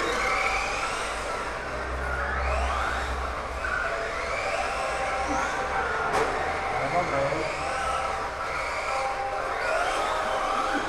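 Radio-controlled drift cars with electric motors whining, the pitch rising again and again as they accelerate across the floor.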